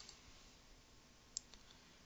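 Near silence with a single computer mouse click, a short sharp tick, a little over a second in.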